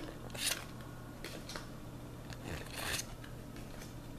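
Paper code cards being handled and swapped in the hand: a few soft, brief rustles and scrapes of card stock.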